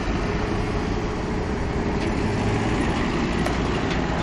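Steady rumble of a freight train rolling away down the track, with a minivan driving past across the level crossing.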